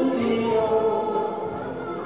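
Women singing a Swiss folk song live with accordion accompaniment, a few held notes moving from pitch to pitch.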